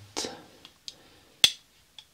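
Eyeglasses being handled and set down on a table: a few light clicks, the sharpest about one and a half seconds in.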